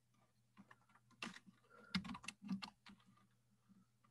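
Faint keystrokes on a computer keyboard: a single click a little after a second in, then a quick run of several between two and three seconds.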